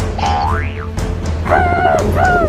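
Cartoon sound effects over background music: a quick whistle-like glide rising and falling back down, like a boing, in the first second, then a wavering, warbling pitched tone near the end.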